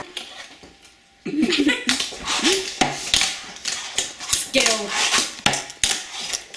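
Excited, mostly wordless voices and short cries, broken by several sharp knocks and clatters of things set down on a kitchen counter.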